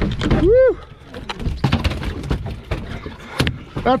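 A short whoop that rises and falls in pitch, then irregular knocks and thumps on a boat deck, one louder knock near the end.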